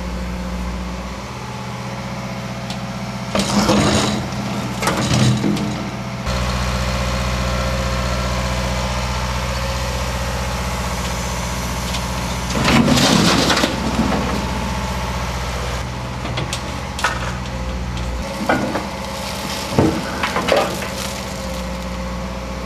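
Wheeled excavator's diesel engine running steadily while its bucket scrapes and handles earth and broken rubble. Loud crashing spells come around four and thirteen seconds in, with shorter knocks near the end.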